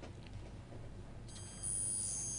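A faint low hum, then about a second and a half in a steady high-pitched electronic whine made of several tones comes in and holds.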